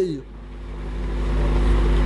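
A low rumble that grows steadily louder, over a steady hum.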